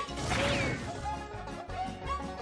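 Cartoon background music with a short crash-like sound effect about half a second in.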